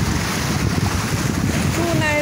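Wind buffeting the microphone: a loud, fluttering low rumble that runs steadily without a break.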